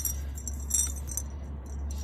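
A small, heavy closed container shaken by hand in several short shakes, its loose metal contents jingling like coins.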